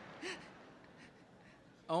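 A quiet lull in a large hall. A single short vocal sound comes about a quarter second in, and a man's voice begins speaking right at the end.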